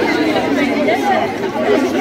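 Crowd chatter: many voices of adults and children talking over one another at once.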